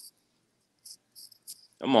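A quiet pause broken by four or five faint, very short high-pitched chirps, then a man's voice begins near the end.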